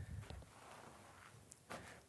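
Near silence, with a few faint footsteps near the start and again near the end.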